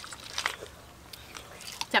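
People eating and chewing dragon fruit dessert, heard as a few short mouth clicks.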